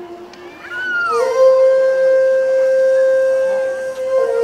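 A wind instrument in the music bends its pitch about a second in, then holds one long, steady note.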